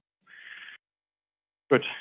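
A short, breathy intake of breath from the lecturer, about half a second long, heard through narrow-band video-call audio, followed by complete silence until he starts speaking again near the end.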